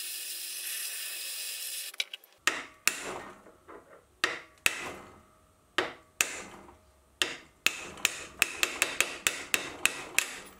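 Small butane blowtorch hissing steadily, cutting off about two seconds in. Then comes an irregular run of about twenty sharp metal clicks and knocks as the steel arbor is worked loose and pushed out of the steel ring, the heat having softened the super glue that held it.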